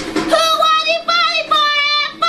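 A song with a high singing voice over backing music: the voice comes in about a third of a second in and sings three held notes, the first the longest.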